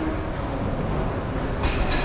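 Steady low rumbling from a cable weight machine being worked, with a short metallic clink near the end.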